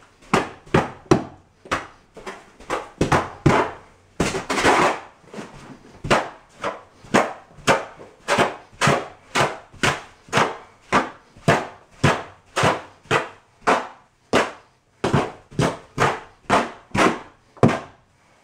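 Mortar hoe scraping and pushing through sand-and-cement deck mud in a plastic mortar tub, in even strokes about two a second, with one longer drag about four seconds in.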